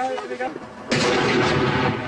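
Large firework rocket going off: a sudden loud rush of noise about a second in that carries on, with faint voices before it.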